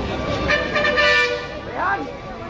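A vehicle horn honks once, steady for about a second, over crowd chatter. A short rising cry follows near the end.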